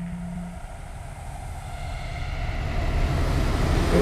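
A low vehicle engine rumble that grows steadily louder.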